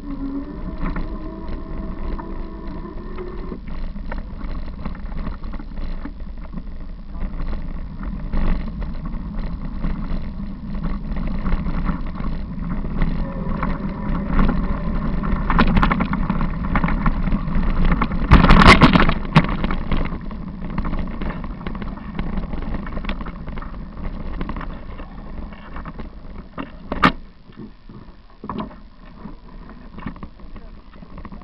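Bicycle ride picked up by a camera on the bike: a steady rumble of wind and tyres on the path, with frequent small rattling knocks, and one loud jolt about two-thirds of the way through.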